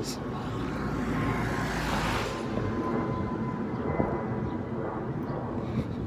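Street noise: a steady low rumble with a passing vehicle that swells to its loudest about two seconds in and then fades away.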